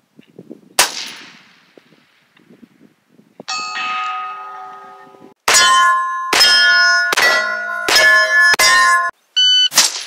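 A suppressed .223 rifle shot about a second in, followed some two and a half seconds later by a ringing ding from the bullet striking a steel target at 1200 yards. Then a string of five sharp hits on steel plates, each ringing out, a little under a second apart.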